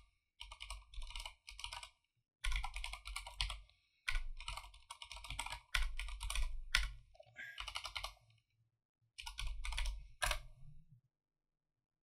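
Computer keyboard being typed on in quick runs of key clicks, broken by short pauses. The typing stops about a second before the end.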